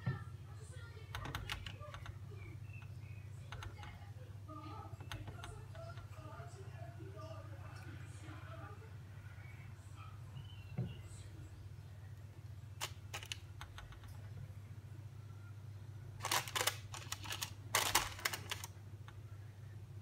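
A steady low hum from a kitchen appliance, with light clicks and taps of food being handled on a tray; a cluster of sharper clicking and tapping comes near the end.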